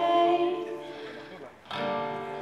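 A woman singing to her own acoustic guitar: her held note fades out in the first half-second while the strummed chord rings and dies away, and a fresh chord is strummed near the end.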